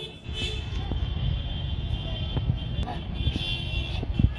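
Outdoor ambience at a busy livestock fair: a low, uneven rumble with faint music in the background.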